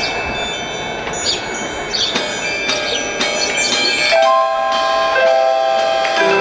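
Quiet opening of an indoor percussion ensemble show: scattered bell-like mallet strikes ring out. From about four seconds in, held synthesizer notes enter and sustain.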